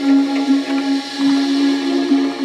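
Electronic music: one long, steady held note with quieter tones above it.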